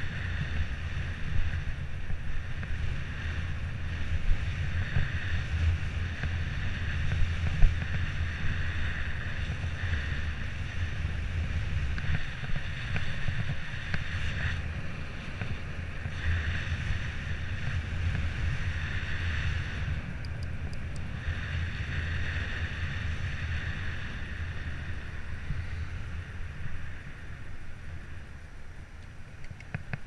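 Wind buffeting the microphone of a camera on a moving electric bicycle, with steady road and tyre rumble and a higher hum that drops out briefly twice.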